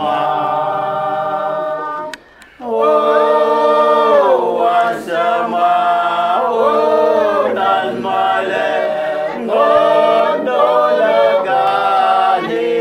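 A group of men and women singing together unaccompanied, in long held notes. The singing breaks off briefly about two seconds in, between lines, then carries on.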